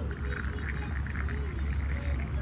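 Warm water poured in a thin stream into a glass of dry yerba mate leaves: a steady splashing trickle that starts right away, over a low steady rumble.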